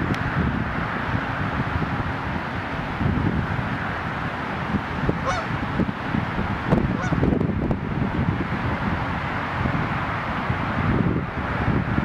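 Steady wind rushing over the microphone at the open lakefront, with a few short water-bird calls in the middle stretch, goose-like honks.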